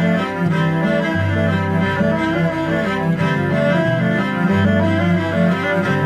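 Instrumental background music with held, low bowed-string notes and a sustained bass line.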